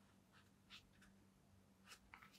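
Near silence, with a few faint brief rustles and scuffs as hands flex the fingers of an Adidas Predator Accuracy goalkeeper glove's knit and latex, over a low steady hum.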